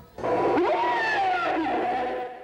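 Animatronic Tyrannosaurus's recorded roar played through the exhibit's loudspeakers: one long call that sets in just after the start, its pitch slowly sliding down.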